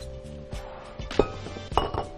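Kitchen bowls and dishes clinking as they are handled and set down on a counter, the loudest clink a little past a second in, over soft background music.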